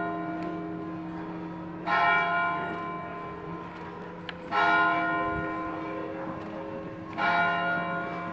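A single church bell tolling slowly, one stroke about every two and a half seconds, three strokes in all, each ringing on and fading before the next.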